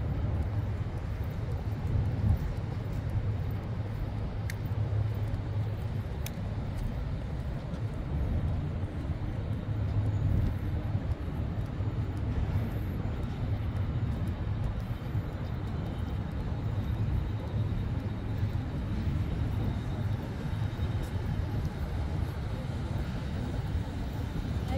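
Steady low rumble of distant city traffic, even throughout with no single vehicle standing out.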